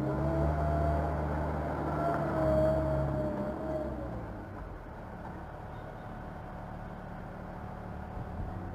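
Small backhoe loader's diesel engine pulling hard as the machine drives off, with a high whine over it for about four seconds. It then drops back to a steady lower running sound.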